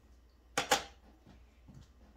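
Two sharp clacks close together, a little over half a second in, as kitchen things are handled between the stovetop pan and the cutting board.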